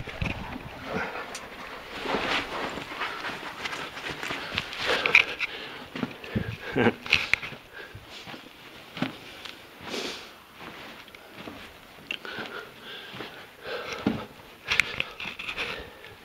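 A man breathing hard as he moves through a cave, with irregular rustling of clothing and gear and short scuffs and knocks against rock and sand.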